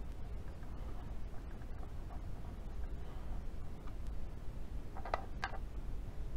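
Small clicks of plastic and metal parts as a 1:18 diecast model's wheel and its small tool are handled, with two sharper clicks about half a second apart near the end. A steady low hum runs underneath.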